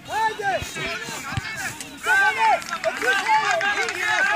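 Several voices shouting and calling out at once across a football pitch, overlapping shouts with rising and falling pitch.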